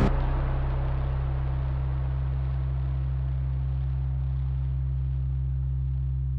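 Trailer soundtrack sound design: a low, steady drone under a hiss that slowly fades away, the lingering tail of a heavy hit.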